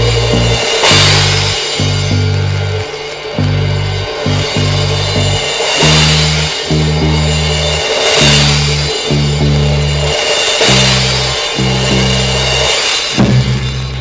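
Instrumental band music from an album recording: a drum kit with repeated cymbal crashes over a stepping bass line, without singing, the music changing shortly before the end.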